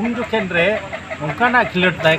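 A man's voice talking continuously; nothing else stands out.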